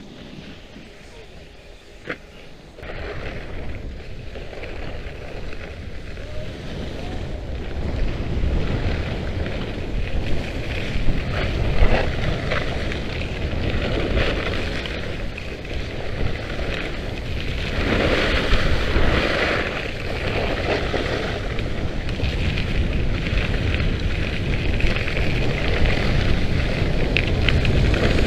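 Wind buffeting the microphone and skis scraping and hissing over icy snow during a downhill run. It is quiet for the first few seconds, then grows steadily louder as speed builds, with stronger swishes of carving turns past the middle.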